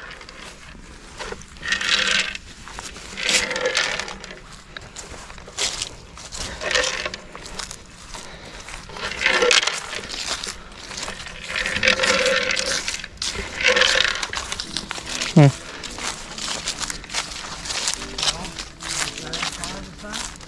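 A shot-riddled plastic coffee can being handled and carried, with short rattling bursts every second or two from loose birdshot pellets shifting inside it.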